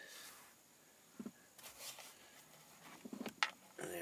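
Faint handling noises of a hand and a small tool working behind a steering wheel, with one sharp click about three and a half seconds in, and a voice starting near the end.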